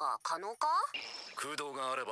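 Japanese dialogue from the anime: a character speaking in Japanese, with a brief faint high-pitched tone in the background near the middle.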